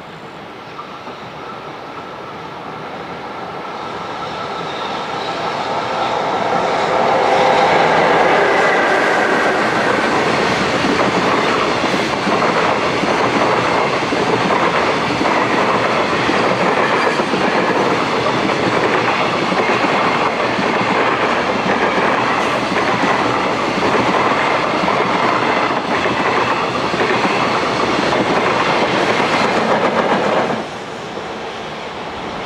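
JR Freight container train hauled by an EF66 electric locomotive passing close by: the sound grows over the first eight seconds as the locomotive approaches, then the wagons go by with a steady rumble and clickety-clack of wheels over the rail joints. Near the end the EF210-300 banking locomotive pushing at the rear passes.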